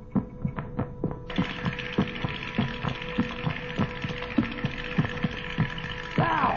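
Soundtrack effect of intense thinking: a steady electronic hum with a throbbing, heartbeat-like pulse about three times a second. A hissing layer joins about a second in.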